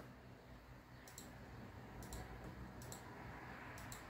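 A few faint mouse-button clicks, spread about a second apart, over a low steady hum.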